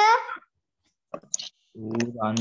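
A man speaking Sinhala. His speech breaks off about half a second in and resumes near the end, with a short pause between.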